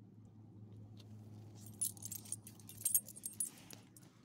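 Metal tags on a dog's collar jingling in two short bursts, about two and three seconds in, as the dog wriggles and gets up off the pavement, over a low steady hum.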